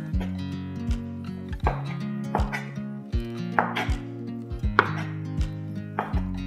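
Chef's knife slicing raw beef and knocking on a wooden cutting board in irregular strokes, roughly one or two a second, over soft background music.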